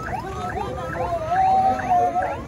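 A siren sounding in quick rising yelps, several a second, with a steady held tone that is loudest in the second half.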